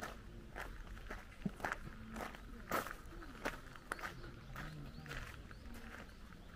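Footsteps on a gravel path, a steady walking pace of about two steps a second.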